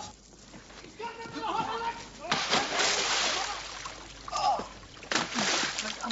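People splashing and sloshing through water as they scramble to catch someone, in two loud stretches, the first about two seconds in and the second near the end, with brief shouts between.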